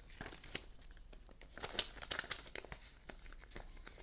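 Banknotes rustling and a clear plastic binder sleeve crinkling as a bundle of cash is handled and slid back into it: a string of soft crackles, busiest around the middle.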